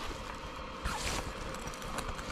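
Nylon zipper on a portable clothes dryer's fabric cover being pulled open, a short rasping run about a second in, over a steady low hiss from the dryer's fan.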